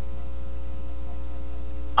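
Steady electrical mains hum, a loud low drone with a few faint steady higher tones over it.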